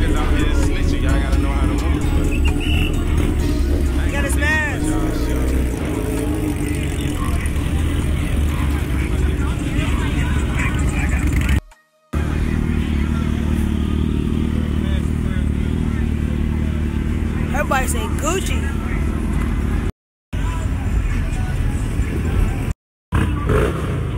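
Busy street noise: motorcycle and car engines running under crowd chatter, with a heavy low rumble throughout. The sound cuts out briefly twice.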